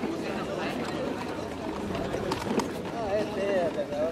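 Wheelchair rolling over cobblestones, a steady rough rumble with a couple of sharp knocks from the wheels about halfway through, under indistinct voices.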